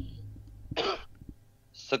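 A man clears his throat once, briefly, about a second in, and takes a quick breath near the end.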